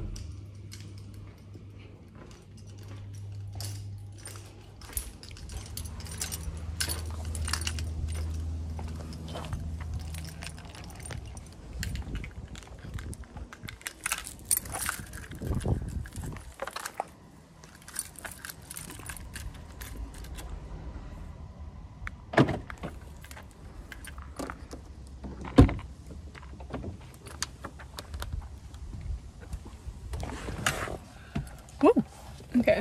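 Light metallic jangling and clicking with clothing rustle as the phone is handled and carried. A low rumble runs through the first ten seconds, and two sharper knocks come in the second half.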